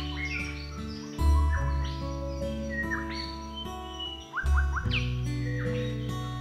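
Background music: sustained low bass notes that change about a second in and again past the middle, with quick bird-like chirping glides in the upper range.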